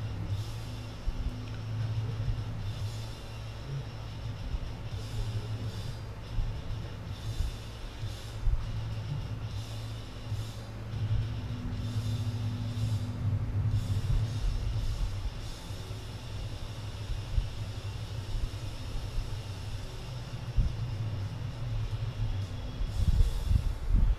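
A steady low hum runs throughout, with light scattered ticks and rubs from a hand working a plexiglass plate on a cast-iron cylinder head.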